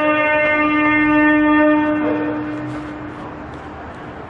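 A man's voice chanting Quran recitation, holding one long, steady note that fades away about two to three seconds in.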